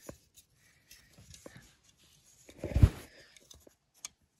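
Handling noise from a plastic fire detector base and its cables being moved about by hand: faint rustles and small clicks, with one louder thump nearly three seconds in.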